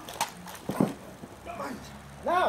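Stunt fight on grass: a sharp hit about a quarter second in, then a louder thud with a short grunt near the middle, followed by brief strained vocal sounds.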